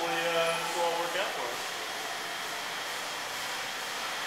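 A man's voice trails off in the first second or so, leaving steady background noise in a large, empty building with no distinct event.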